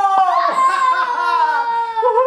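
A long, high-pitched celebratory shout held for over a second and falling slowly in pitch, cheering a goal just scored in a tabletop foosball game. A short knock comes just before it, near the start.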